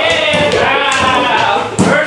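A voice singing or vocalizing on held, gliding notes, with a single knock near the end as a chair is set down on the stage floor.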